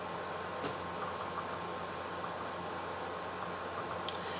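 Steady low hiss of room tone, with a single faint click about two-thirds of a second in.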